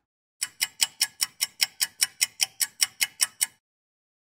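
Clock ticking sound effect: a fast, even run of sharp metallic ticks, about five a second, that starts about half a second in and stops about half a second before the end.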